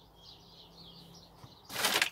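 Faint birds chirping in the background, then near the end a short, loud rustle of bags being handled.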